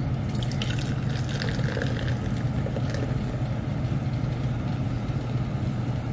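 Canned energy drink poured from an aluminium can into a glass cup: a steady stream of liquid running into the glass as it fills.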